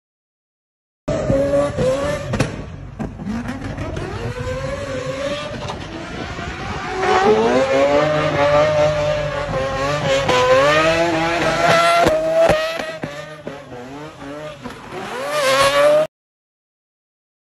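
Drift car engine revving hard, its pitch swinging up and down over and over as the car slides, with tyres squealing. The sound cuts in suddenly about a second in and grows louder partway through as the car comes closer.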